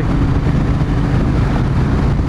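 Triumph T120 Bonneville's 1200 cc parallel-twin engine pulling in sixth gear from about 3000 rpm at motorway speed, with heavy wind rush over the bike.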